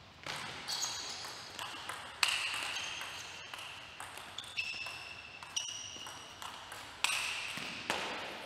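Table tennis rally: the plastic ball clicking off the rackets and bouncing on the table, about fifteen quick hits roughly two a second, each with a brief ringing ping.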